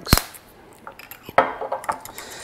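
A sharp click just after the start, then a knock about a second and a half in, with a few lighter clinks after it: kitchen handling sounds of a hot sauce bottle being capped and set down on a stone countertop and a spoon being taken up in a mixing bowl.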